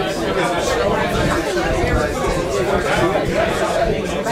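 Chatter of a group of diners, many voices talking over one another, with a laugh near the start.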